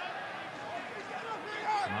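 Stadium crowd at a football match: a steady murmur of many voices, with scattered calls and one louder shout near the end.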